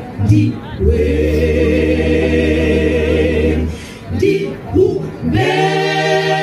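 Mixed choir of women's and men's voices singing a cappella gospel music: a chord held for about three seconds, a few short notes, then another chord held near the end.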